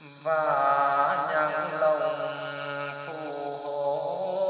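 A voice sings a slow, chant-like line of a Vietnamese song, coming in suddenly about a quarter second in and holding long notes with wavering pitch.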